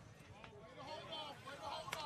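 Faint, distant voices of people talking in the stands and around the field.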